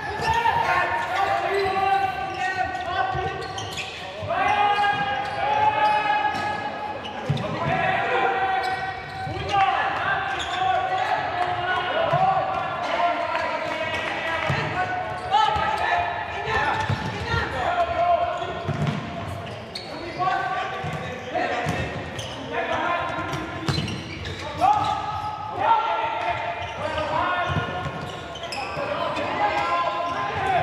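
Voices shouting and calling out, some calls drawn out, echoing in a large sports hall. Beneath them come the short thuds of a futsal ball being kicked and bouncing on the hard court floor.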